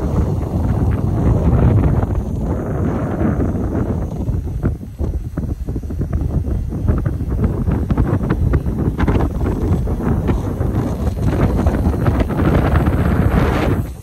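Wind buffeting the microphone of a camera carried on a moving bicycle: a loud, uneven low rumble of rushing air.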